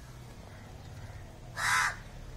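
One loud, harsh bird call near the end, over a faint steady low hum.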